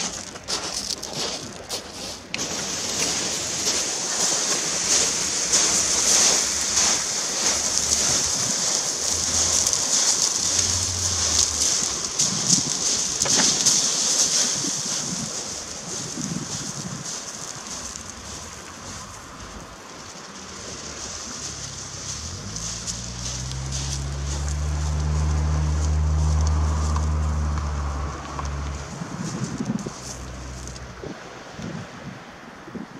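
Loose shingle crunching and rattling under the wheels of a home-made four-wheel electric barrow and a man's footsteps, loudest in the first half and fading as they move away down the slope. About two-thirds of the way in, a low steady hum rises and lasts several seconds.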